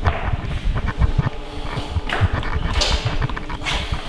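Crackling and thumping noise from a faulty camera microphone: dense irregular clicks and low bumps throughout, with a few brief hissy swells around the middle.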